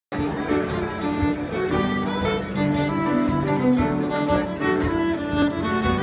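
Fiddle playing a lively contra dance tune, with upright piano keeping a steady rhythmic chordal accompaniment; the music starts abruptly right at the beginning.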